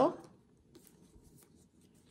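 Faint, soft rubbing and light taps of hands handling strands of challah dough on a countertop while braiding, after the tail end of a spoken word.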